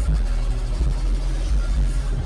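Live arena concert recorded on a phone: a heavy, steady bass rumble from the PA with crowd noise over it.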